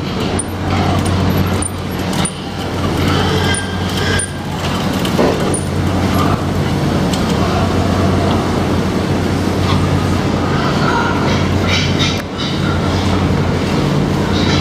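Steady low mechanical hum of a hog barn, with repeated clanks and rattles from a steel hand cart as it is worked under a dead hog and wheeled over the slatted floor. Pigs grunt now and then.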